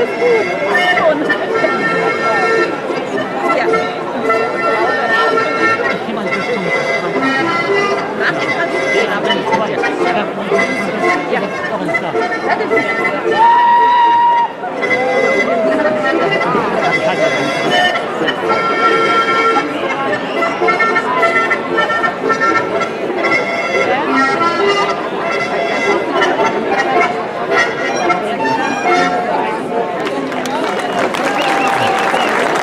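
Accordion playing a lively folk dance tune, with one held high note about halfway through and a brief dip before the tune goes on; crowd voices underneath.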